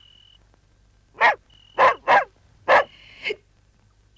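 A dog barking, about five sharp barks in quick succession starting a little over a second in, the last one weaker.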